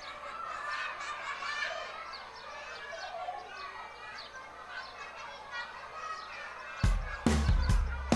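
A busy jumble of many overlapping high-pitched calls and chatter from a crowd of cartoon animal voices. Nearly seven seconds in, loud music with a drum kit and bass starts abruptly.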